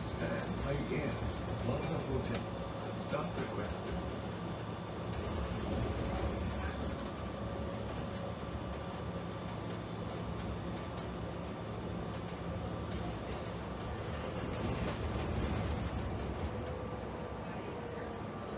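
Inside a New Flyer DE60LFR articulated diesel-electric hybrid bus under way: a steady drivetrain hum with a thin whine over continuous road noise.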